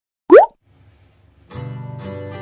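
A short cartoon 'bloop' sound effect, a quick upward pitch sweep, about a third of a second in and the loudest thing here. About a second and a half in, background acoustic-guitar music starts.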